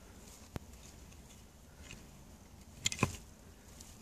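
A hand digging tool knocking and scraping in soil: a single sharp click about half a second in, then a short cluster of louder knocks about three seconds in, over a faint background.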